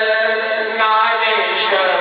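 A solo man's voice chanting a devotional melody into a microphone, holding long drawn-out notes that slide slowly in pitch.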